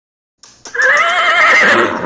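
A horse whinnying: one long neigh with a quavering, wavering pitch, starting under a second in and fading near the end.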